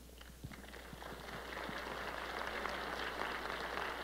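Faint audience applause that starts about a second in and swells steadily.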